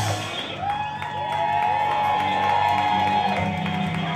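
Live rock band holding a sustained chord, with electric guitar notes bending up and down in pitch over it.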